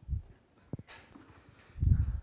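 A pause with two muffled low thuds, one at the start and a louder one near the end, and a short click about three-quarters of a second in.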